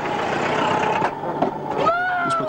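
An old car pulling away: a steady, noisy rush of engine and wheels. A child's shout starts near the end.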